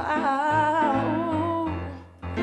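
A woman singing a wordless melodic line with strong vibrato over keyboard accompaniment; her held note fades away near the end.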